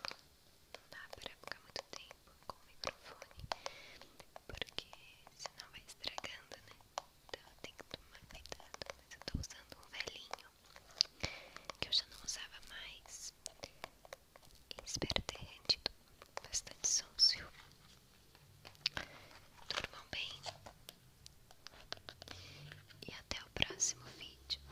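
Slime squishing and crackling close against a phone's microphone, with many small irregular clicks and pops.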